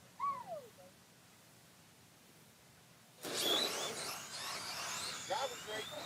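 Pair of RC drag cars making a pass: a sudden burst of high-pitched motor whine and tyre noise starts about three seconds in and carries on. There is a short falling vocal sound near the start.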